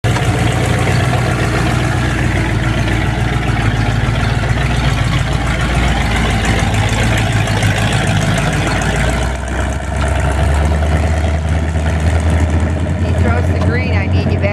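Stock car's engine running loud and close, with a change in its tone about nine to ten seconds in.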